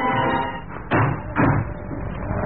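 Radio-drama sound effect of a wooden door being pushed shut and a small latch slid home: two knocks about half a second apart, as a music cue fades out.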